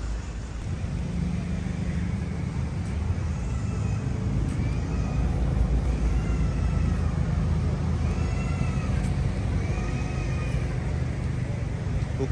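A toddler crying in a string of rising-and-falling cries, about one a second, starting a few seconds in, over a steady low rumble of traffic.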